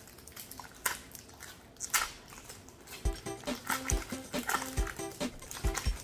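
Foil trading-card booster packs crinkling and tearing open, with a few sharp rips in the first half. About three seconds in, background music with a steady beat starts.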